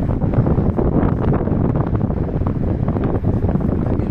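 Wind blowing across a phone's microphone, a loud, unsteady low rumble.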